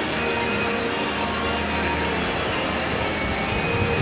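Steady mechanical hum of an Orbitron-style spinner ride turning, its rocket-ship cars raised.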